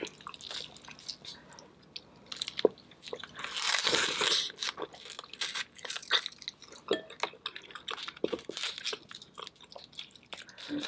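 Close-miked eating sounds: shellfish shell, likely king crab legs, being cracked and peeled apart by hand, and the seafood meat being bitten and chewed, in a run of small clicks and cracks. A louder, longer stretch comes about three and a half seconds in.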